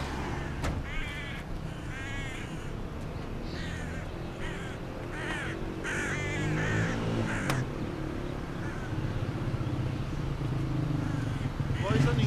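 Crows cawing repeatedly, a string of harsh calls over several seconds, over the steady low hum of an engine running. A single sharp click comes about seven and a half seconds in.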